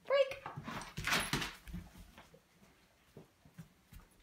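A dog moving about on a wooden floor: a brief rustling burst about a second in, then a few faint clicks of its claws on the boards.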